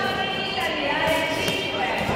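Voices shouting and calling out in a large sports hall during a kickboxing exchange, with a few short smacks of strikes landing.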